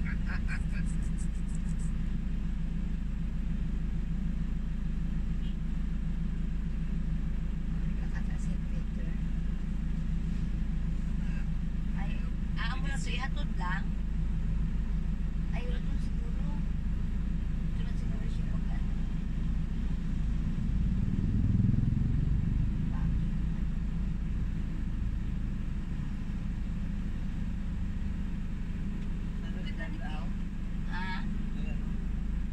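Steady low rumble of a vehicle's engine and road noise heard from inside the cabin while driving slowly through city traffic. The rumble swells briefly about two-thirds of the way through, and there are a few brief snatches of voices.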